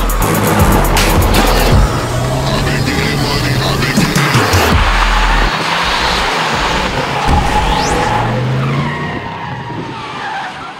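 A car's engine revving hard as it slides sideways on a snowy road, over music with a steady bass. The sound fades down over the last second or so.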